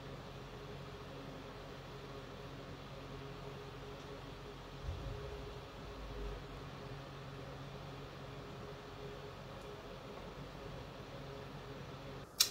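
Quiet room tone: a steady hiss with a low hum, and a soft low bump about five seconds in.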